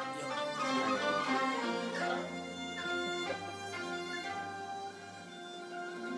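A Mongolian folk ensemble playing a melody live, with bowed horsehead fiddles (morin khuur) carrying sustained notes and sliding pitches over a low accompaniment.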